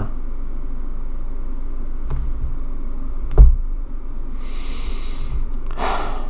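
Steady low rumble of background noise with a single sharp knock about three and a half seconds in, a fainter click before it, and a soft hiss about a second after it.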